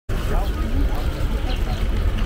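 Wind buffeting the microphone in a steady, fluttering low rumble, with faint distant voices and a few short faint chirps over it.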